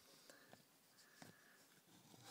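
Near silence: room tone, with a couple of faint clicks.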